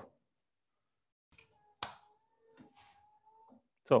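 A switch clicks a little under two seconds in, then the ROCA W50 electric wiper motor runs faintly with a steady hum for under two seconds and stops as the wiper returns to its parking position.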